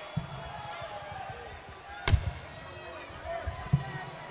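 Murmur of an arena crowd, with a sharp thump about halfway through and a second, lighter thump near the end.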